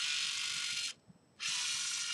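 Two synchronized LEGO EV3 motors running in two short bursts of just under a second each, with a steady gear whine: one right at the start and another about a second and a half later. They are stepping through one-rotation encoder moves under program control.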